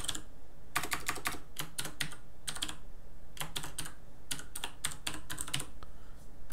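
Computer keyboard typing: several short runs of quick keystrokes with brief pauses between them.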